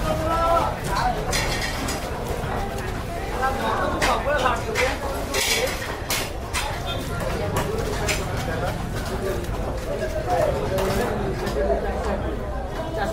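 A knife chopping a large catla fish into pieces on a wooden board, with a sharp clink or chop every second or so at an uneven pace, over the voices and hubbub of a busy market.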